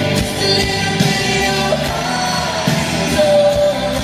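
Pop song playing: a man singing a slow, sustained vocal line over band accompaniment.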